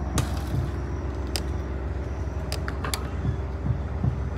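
Steady low background rumble with a few faint, short clicks scattered through it.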